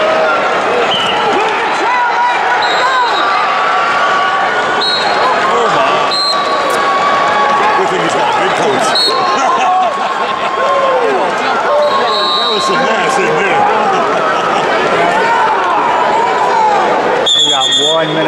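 Arena crowd of many voices shouting and calling over each other during a heavyweight wrestling bout, with short high whistle blasts dotted through it. Near the end a louder referee's whistle stops the action for an illegal interlocking of fingers.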